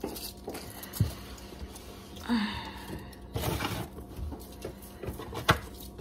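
Scattered knocks and clatters of things being handled, the sharpest about five and a half seconds in, with a brief short voice-like sound about two seconds in.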